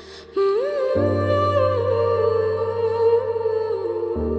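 Background score: a wordless hummed melody gliding over held, sustained chords. The melody enters just after the start and a low bass note joins about a second in.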